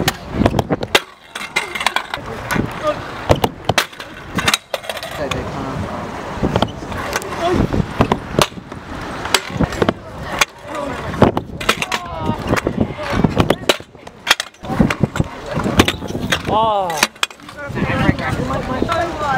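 Stunt scooter riding on concrete: the small hard wheels roll with a steady rumble, broken by many sharp clacks and knocks as the scooter lands and its deck and bars hit the ground.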